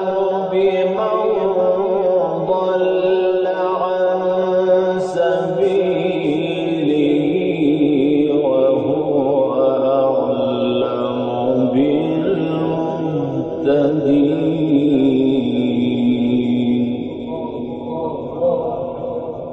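A man reciting the Qur'an in the melodic, drawn-out mujawwad style, singing one long unbroken phrase with held, wavering and gliding notes.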